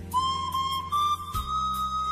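Pan flute entering about a quarter second in with a long held note that steps up slightly, played over a steady bass accompaniment with light percussion ticks, in an Andean-style instrumental.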